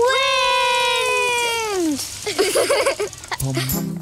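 A cartoon child's voice calls out a long, drawn-out "wind!", held for about two seconds and falling in pitch at the end, followed by brief voice sounds. Bouncy background music with a regular beat starts near the end.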